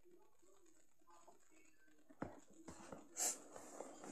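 Handling noise: a sharp tap about halfway through, then a few light clicks and a brief rustle as a hand reaches in among small plastic toy figures on a table.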